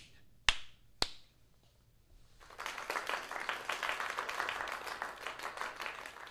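Two sharp claps about half a second apart, then from about two seconds in a dense spell of applause that fades near the end.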